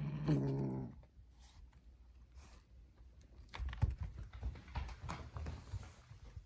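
Calico kitten growling low for about a second while holding a toy mouse in its mouth: a kitten guarding its prey toy. Later, a few scattered knocks with a low rumble.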